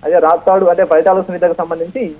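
Speech only: a news narrator reading continuously in Telugu.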